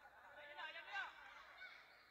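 Faint, short squeaks of basketball sneakers on a hardwood gym floor as players run and change direction, several in quick succession with the loudest about a second in, over low voices from the gym.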